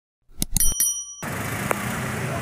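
Sound-effect clicks and a bright bell-like ding from a subscribe-button animation, cut off abruptly about a second in. Street traffic noise follows.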